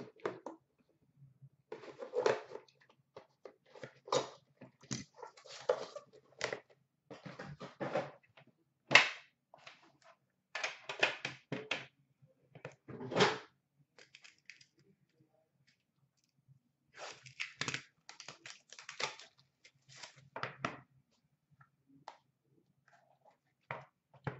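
Handling noise as a box of trading cards is unpacked: plastic wrapping crinkling and rustling, mixed with small clicks and knocks of cardboard and a tin box. It comes in irregular bursts, with a pause of a few seconds past the middle.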